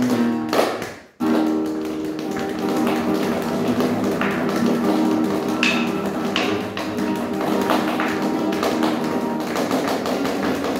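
Acoustic guitar strumming chords with a cajón tapping out the rhythm. Both stop sharply about a second in, then come back in with ringing chords and hits.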